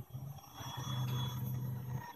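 Servo-motor linear drive moving along its rail: a steady low hum that grows louder about a second in and stops near the end.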